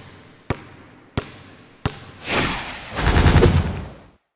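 Sound effect of a basketball bouncing on a hard floor: three sharp bounces about two-thirds of a second apart, each ringing out, followed by a whooshing rush that swells and a louder, fuller rush near the end as the logo animation lands.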